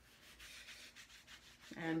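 Faint, soft rubbing, which stops as speech resumes near the end.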